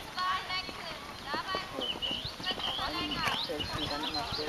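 Hoofbeats of a ridden horse moving on grassy ground, coming close: a run of dull, irregular thuds.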